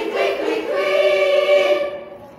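Girls' choir singing, closing the song on a long held chord that stops just before the end.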